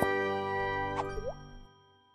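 Short logo jingle: a held electronic chord with a cartoon plop effect that swoops down and back up about a second in, then fades out before the end.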